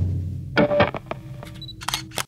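A rock electric-guitar chord dies away. Then comes a camera sound effect: several shutter clicks, the last ones in a quick cluster near the end.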